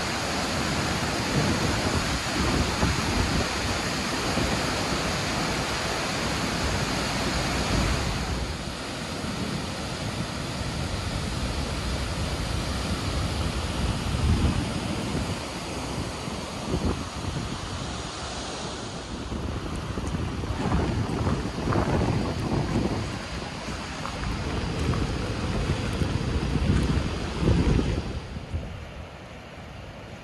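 Steady roar of Skógafoss, a large waterfall, heard close up, with gusts of wind buffeting the microphone. The sound changes character about eight and nineteen seconds in and turns quieter near the end, heard from farther off.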